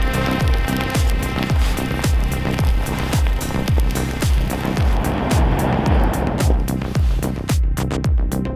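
Electronic dance music with a steady kick drum, about two beats a second, and ticking hi-hats; a rising wash of noise builds in the middle and cuts off near the end, leaving the beat thinner.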